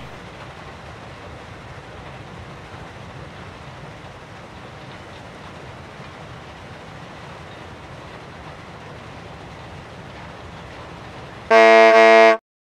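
A steady low hiss of background noise, then near the end a loud, steady horn-like blast lasting under a second that cuts off abruptly.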